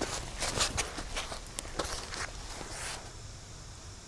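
Soft rustling and brushing as a person shifts from lying prone to kneeling on a ground mat and grass, several light scuffs over the first three seconds, then quieter.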